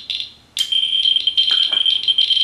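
Radiation counters sounding off a uranium-glass dish: rapid crackling counts, then about half a second in a steady, high-pitched buzz of near-continuous counts starts as the rate meter's audio is switched on. A few light handling knocks come through near the end.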